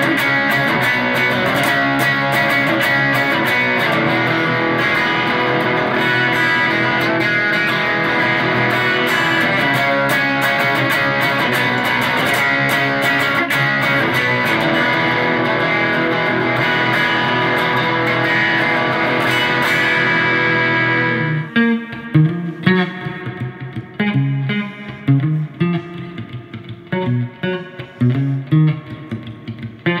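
Fender American Professional Jazzmaster electric guitar played through a Fender Hot Rod Deluxe IV valve amp. It gives a dense, sustained wall of chords for about twenty seconds, then breaks off into separate picked notes and short phrases.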